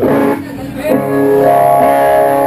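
Electric guitar strumming chords through an amplifier: one chord struck at the start that fades quickly, then another about a second in that rings on.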